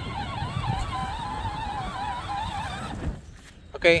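Electric motor of a child's John Deere ride-on toy whining as it drives across grass, its pitch wavering with the load, then cutting off suddenly about three seconds in when the pedal is let go.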